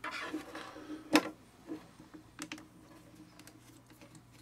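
Hands handling a small plastic speaker housing: one sharp click about a second in, then a few faint ticks, over a faint steady low hum.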